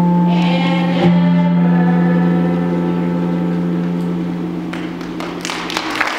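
Choral music holding one long closing chord, which shifts about a second in and slowly fades toward the end. A few soft knocks sound in the last second.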